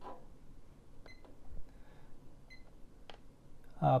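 Buttons on a Kill A Watt EZ plug-in power meter pressed twice, each press giving a short high beep about a second and a half apart, followed by a sharper click.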